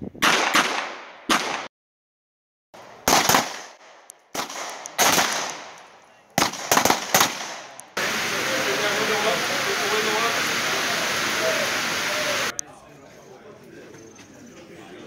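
Pistol shots on an outdoor firing range: single shots and quick pairs, about ten in all, each with a short ringing echo, broken by a second of dead silence at an edit. Then a steady hiss for about four and a half seconds that cuts off suddenly.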